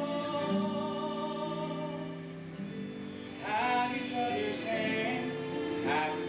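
Musical-theatre song: a solo voice sings long held notes over a steady instrumental accompaniment. About three and a half seconds in, a new phrase starts with an upward slide, and another phrase begins near the end.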